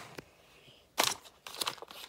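Handling noise of a phone rubbing and knocking against a hoodie while a pack of gum is pulled out and handled: a few sharp clicks and crinkles, the loudest about a second in.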